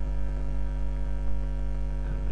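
Steady electrical mains hum: a low, unchanging buzz with a ladder of higher overtones, carried in the recording itself.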